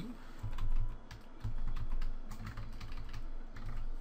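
Computer keyboard typing: a run of irregular key clicks.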